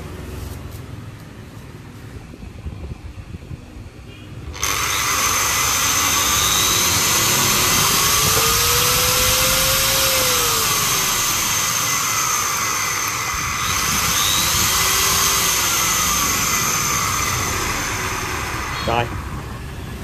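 Angle grinder with a cutting disc, powered through an SCR speed controller, starts suddenly about four and a half seconds in and runs free for about fourteen seconds. Its pitch rises and falls as the controller's knob is turned, then it winds down near the end.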